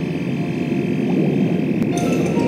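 Dense bubbling and gurgling of scuba divers' exhaled air underwater, with a thin steady high tone held beneath it.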